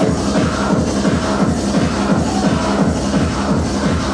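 Minimal techno played loud over a club sound system and picked up live by a camera microphone. The kick drum and bass come back in right at the start after a short break, then run on in a steady repeating groove.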